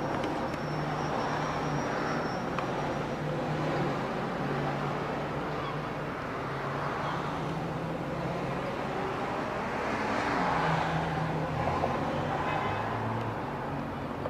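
A car engine running with road noise. Its low hum shifts up and down in pitch, and the noise swells a little about ten seconds in.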